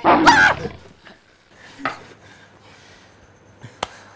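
A man's short, loud growling roar in imitation of a big cat, lasting well under a second, then a few faint sounds and a single sharp click near the end.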